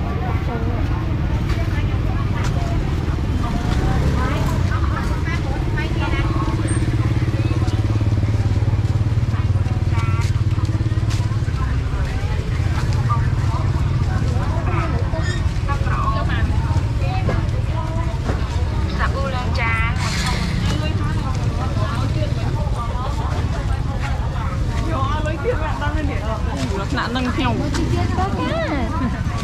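Busy market street ambience: scattered chatter of vendors and shoppers over a steady low rumble of motorbike engines running in the lane.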